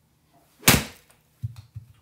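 Golf iron striking a ball off a hitting mat: one sharp, loud crack about two thirds of a second in, followed by a few low thuds.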